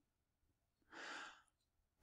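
A man's single short, faint breath about a second in, in near silence.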